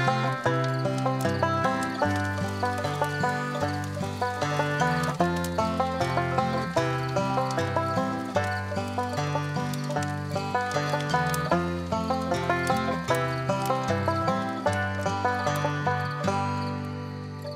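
Background music of quick plucked string notes in a bluegrass style, led by a banjo over a stepping bass line.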